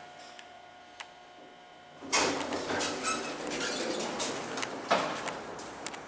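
Elevator doors of a 1982 Westinghouse hydraulic elevator sliding, starting suddenly about two seconds in, with a sharp knock near five seconds in.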